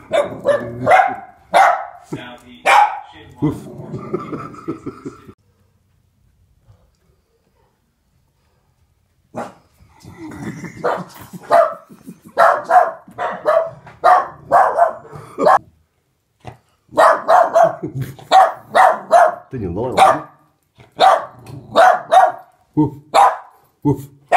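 A small dog barking repeatedly in quick, sharp runs at a toy dog it does not want in the house. The barks stop for about four seconds in the first half, then resume as a long, steady run.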